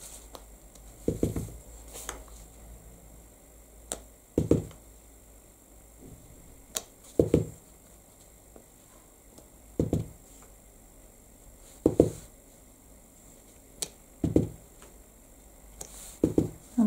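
Clear acrylic stamp block being tapped on an ink pad and pressed onto card again and again: soft, low knocks every two to three seconds, several coming in quick pairs.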